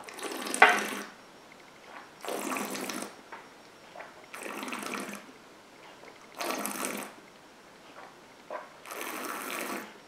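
A mouthful of whisky being swished and chewed, with five breathy, wet bursts of noise about two seconds apart as air is drawn and pushed through the mouth and nose; the first burst is the loudest.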